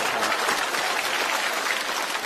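Studio audience applauding a joke: dense, steady clapping from many hands.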